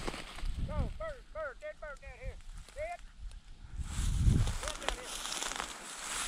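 Footsteps brushing through tall dry grass, with a quick run of about ten short, rising-and-falling high calls in the first half and a few more near the end.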